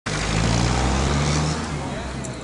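A motor vehicle's engine running close by, a steady low hum over street noise, easing off near the end.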